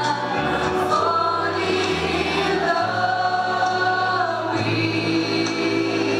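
A group of young voices singing together into microphones with long held notes, over an instrumental accompaniment whose low bass note changes every second or two.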